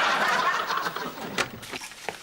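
A man laughing hard, fading away over the first second, followed by a single short click.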